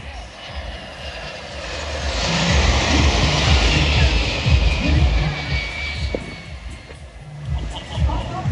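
Boeing 757-200 twin jet engines passing overhead: the jet noise swells from about two seconds in, peaks midway with a whine that slides down in pitch as the plane goes by, then fades near the end.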